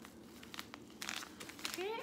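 Plastic zip-top bags of glitter crinkling as they are handled, a faint scatter of small crackles.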